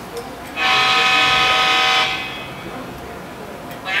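A TCS WOWDiesel sound decoder in a model diesel locomotive plays a recorded locomotive air horn: one steady blast about a second and a half long, starting about half a second in.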